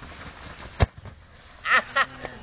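A single sharp thud of a football being kicked, a little under a second in, followed by a short shout near the end.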